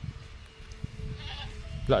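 A goat bleating: one loud, quavering call starting near the end, with a fainter call about halfway through.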